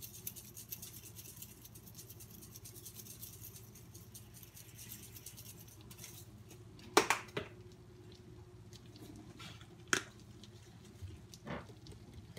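Spice being shaken from a shaker onto noodles in a frying pan, a quiet rapid patter that fades out in the first couple of seconds. It is followed by a few sharp clicks as the spice jars are handled: the loudest about seven seconds in, with a second right after, then single clicks near ten seconds and near the end.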